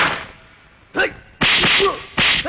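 Dubbed fight-scene sound effects: a short sharp stroke about a second in, then a loud whip-like swish lasting about half a second, with a brief grunt near its end.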